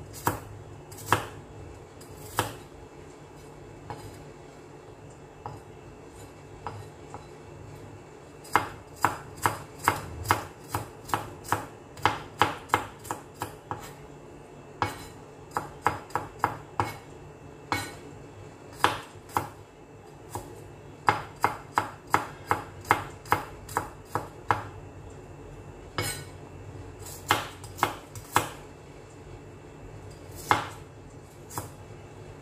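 Chef's knife chopping garlic cloves on a plastic cutting board: a few separate knocks at first, then quick runs of chops, several a second, as the garlic is minced.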